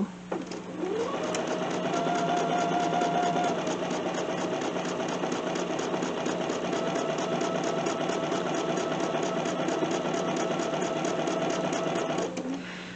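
Bernina 770 QE sewing machine stitching a straight quarter-inch seam: the motor runs up to speed about a second in, then holds steady with a fast, even needle rhythm until it stops near the end.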